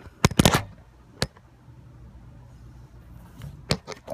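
Handling noise: a few short, sharp knocks and bumps, a quick cluster at the start, a single knock about a second in and another near the end, as the phone and the ring are handled and moved.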